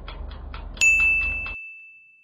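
A quick, even ticking, about six a second, that stops about a second and a half in. Partway through, a single high bell-like ding rings out and slowly fades away.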